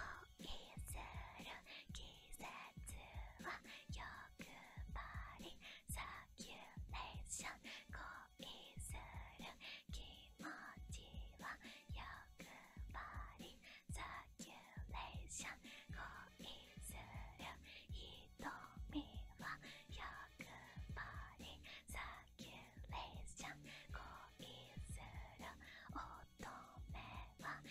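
A woman whispering softly and close into the microphone, in a long string of short breathy phrases, with faint music underneath.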